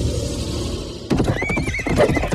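A low music rumble runs for about a second, then a horse whinnies with a wavering high neigh over a clatter of hooves.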